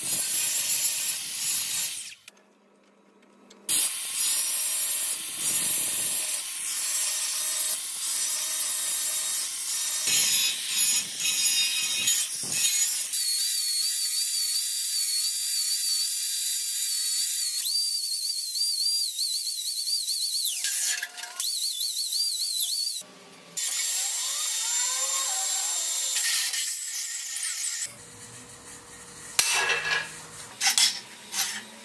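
Angle grinders working steel rod: a cut-off wheel slicing through a rod held in a vise, then a DeWalt 4-1/2-inch grinder grinding a point onto a rod's end. The motor gives a high whine that wavers as the wheel bites, across several edited takes with short breaks. Near the end, a few light metallic clinks as the steel part is set down on a steel table.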